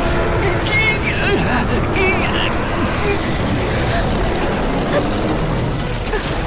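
Dense, steady rumbling battle sound effects from an animated fight, with two short wavering cries about one and two seconds in.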